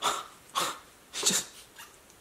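A man making exaggerated kissing smacks with his lips, an aggressive chef's kiss: three short breathy smacks about half a second apart, then a faint fourth.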